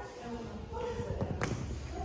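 Faint background voices echoing in a large indoor hall, with a few low thuds and a sharp tap about one and a half seconds in.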